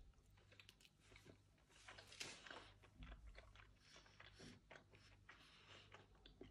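Faint chewing of a mouthful of anchovy parmigiana (fried anchovies layered with tomato sauce and mozzarella), heard as scattered small mouth clicks and smacks over near silence.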